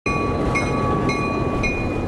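A Norfolk Southern freight train with a diesel locomotive rolling slowly past. There is a steady low rumble and a thin, steady high-pitched squeal over it that dips about every half second.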